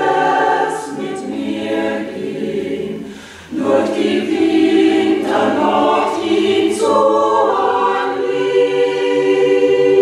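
Mixed choir of men and women singing an Advent song unaccompanied, in long held chords. The singing breaks off briefly about three seconds in, and a fresh phrase comes in just after.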